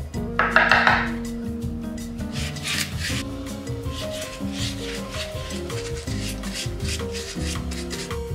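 A bristle paintbrush scrubbing and scratching black paint onto a craft pumpkin in short strokes, with one louder rasp about half a second in. Background music with sustained notes plays over it.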